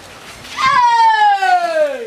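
A single long, loud cry that slides steadily down in pitch, starting about half a second in.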